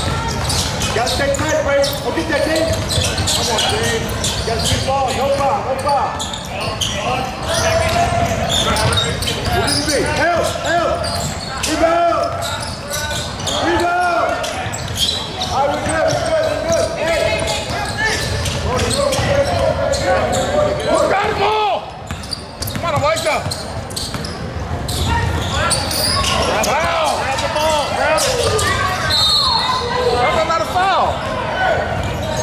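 Basketball game sounds in a reverberant gymnasium: a ball bouncing on the hardwood court amid overlapping shouting voices of players, coaches and spectators.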